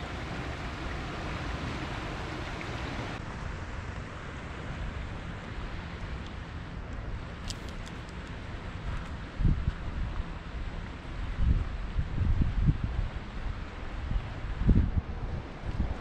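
Wind buffeting the microphone in gusts over a steady outdoor hiss. The gusts start a little past halfway and recur several times, with a few faint clicks in the middle.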